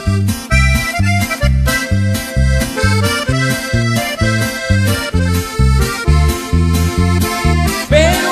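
Instrumental break of a Mexican regional song: an accordion plays the melody over a steady, bouncing bass line.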